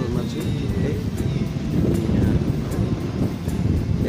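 Wind buffeting a phone microphone, a steady low rumble, with faint voices or music underneath.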